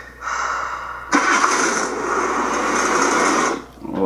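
The Ecto-1's car engine cranking briefly, then catching and running loud for about two and a half seconds before cutting off suddenly.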